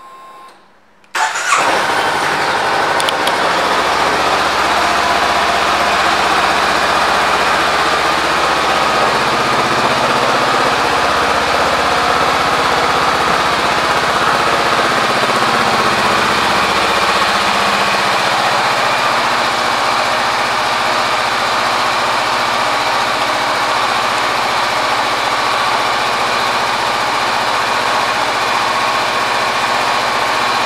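2020 Honda CBR500R's parallel-twin engine with an Akrapovic exhaust, started about a second in, then idling steadily.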